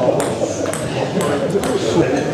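Celluloid-type table tennis ball bouncing with a few short, sharp clicks off the hall floor and table between points, over a steady murmur of voices.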